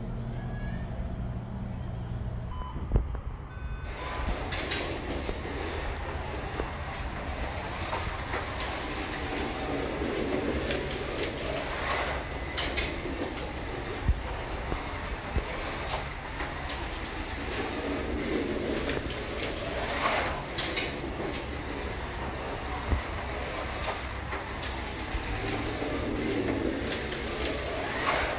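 A Carrera McLaren M20 slot car lapping a plastic slot-car track: its small electric motor whines and its tyres and guide rumble in the slot. The sound starts about four seconds in and swells about every eight seconds as the car passes close, three laps in all.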